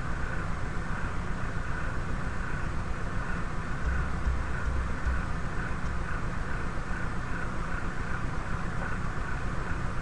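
Steady background noise: a continuous low rumble and hiss with a slight, even pulsing, with no clear events.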